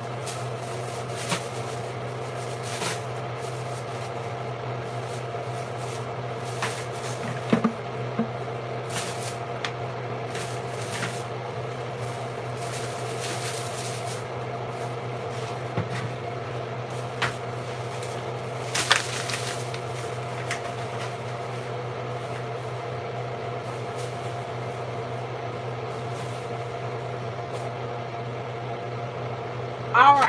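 A steady low electrical hum, with scattered short knocks and clatters of kitchen cupboards and cookware being handled.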